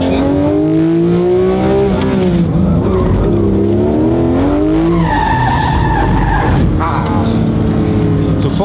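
Porsche GT3 RS's naturally aspirated flat-six heard from inside the cabin, its revs climbing through the first two seconds and again up to about five seconds in. From about five seconds in the tyres squeal for under two seconds.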